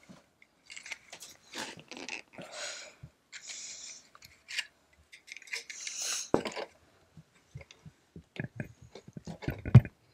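A pink plastic wedge-style cookie cutter pressed down through a soft frosted pink velvet cookie, giving a series of short crunching, crumbling bursts. A sharp plastic click comes a little past halfway, and a run of quick clicks near the end.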